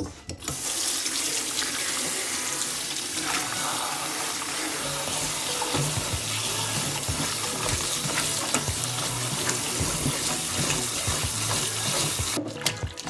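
Kitchen tap running into a stainless steel bowl in the sink, with hands rubbing and swishing leafy greens under the stream. The water comes on about half a second in and then runs steadily.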